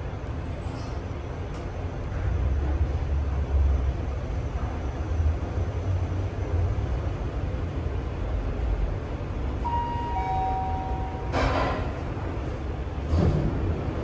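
Traction elevator car travelling, with a steady low rumble in the cab. Near the end a two-tone arrival chime sounds, a higher note then a lower one, followed by two short bursts of noise.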